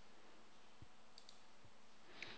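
Near silence: faint room hiss with two quick, soft computer-mouse clicks a little past the middle.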